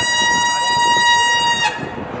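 A horn holding one long, steady high note that cuts off about a second and a half in, over crowd noise.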